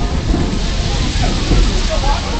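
Steady loud running noise of a passenger railroad coach rolling along the track, with passengers' voices faintly over it.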